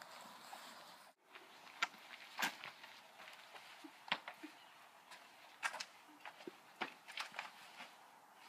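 Footsteps and light shuffling on a concrete porch, with scattered small clicks and knocks. The sound cuts out for a moment about a second in.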